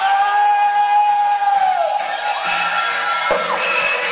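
Female singer holding one long belted note over a live band's pop accompaniment; the note falls away in pitch a little before the middle, and the band carries on with a higher held tone and a sharp hit near the end.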